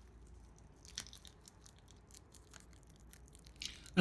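Faint crinkling and small clicks of a small clear plastic parts bag being handled, with one sharper tick about a second in.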